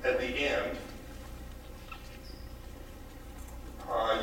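A man's voice speaking for under a second at the start, then a pause of low room tone with a steady low hum.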